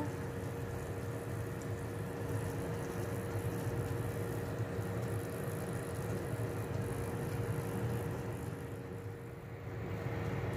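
Vegetable egg pancakes frying in oil in a pan: a soft, even sizzle over a steady low hum.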